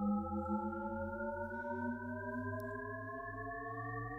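Shepard tone: several pure tones an octave apart gliding slowly upward together, heard as one tone that keeps rising but never reaches the top, an auditory illusion.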